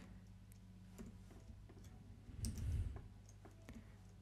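Faint, scattered clicks of a computer mouse and keyboard shortcut keys over a low, steady electrical hum, with a brief soft rustle about halfway through.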